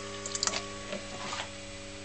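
Rewound microwave oven transformer humming steadily while it feeds an HHO electrolysis cell drawing about 25 amps, with a few small clicks about half a second in.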